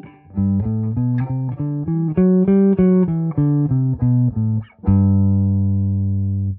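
Gibson Les Paul electric guitar playing a G major scale as single notes, about three to four a second, running up and then back down. It ends on a low note held and left ringing near the end.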